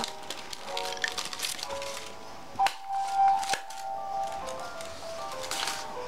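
Background music with held notes, over which a small handheld stapler clicks twice, about a second apart near the middle, as it staples the paper strips of a 3-D paper snowflake together.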